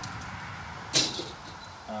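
Squeegee channels being handled, with one sharp, bright clack about a second in.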